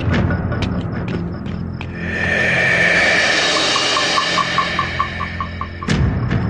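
Dramatic action-film background score with percussion: sharp strokes at first, a swelling rush about two seconds in, then a fast, evenly repeated high pulse in the second half.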